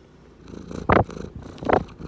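Domestic cat purring right up against the microphone, with two loud swells, one about a second in and one near the end.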